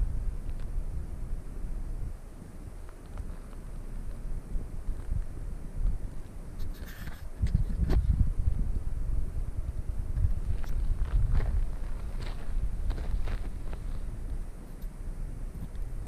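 Wind buffeting a handheld camera's microphone, a steady low rumble, with a few scattered clicks and crunches as the camera is moved low over gravel and dry grass.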